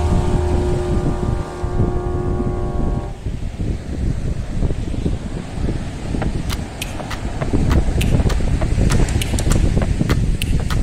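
Background music with held notes that stops about three seconds in, giving way to a rough, low rumbling noise of wind buffeting the microphone with surf on the shore. Scattered sharp clicks come in during the second half.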